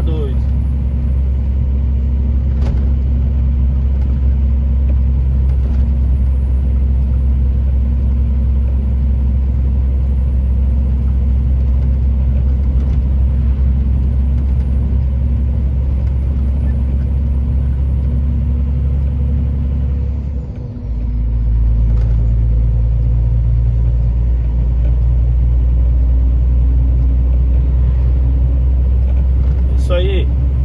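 Steady low drone of a truck's engine and tyre noise heard inside the cab while cruising on the highway. About two-thirds of the way through, the drone briefly dips and then comes back with a changed, slightly higher note.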